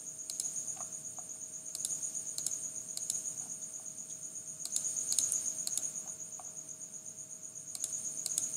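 Several sharp clicks of a computer mouse, spaced irregularly a second or so apart and often in quick pairs, as lines are picked one by one during a trim in a CAD drawing. A faint, steady, high-pitched pulsing hum runs underneath.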